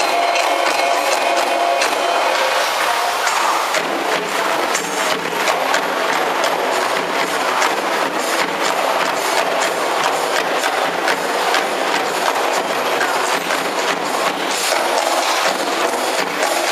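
Percussion ensemble of hand-played frame drums and a large barrel drum in fast, dense drumming, with small gongs ringing over it for the first few seconds.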